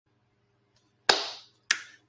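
Two sharp hand claps about half a second apart, each dying away quickly in a small room.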